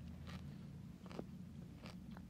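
Faint chewing and crunching of peanut M&Ms close to a microphone, with a few small sharp mouth clicks.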